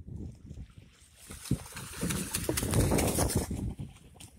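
Sea water splashing and churning at the side of the boat, louder from about a second in, as a hooked kingfish is hauled up to the surface on a handline.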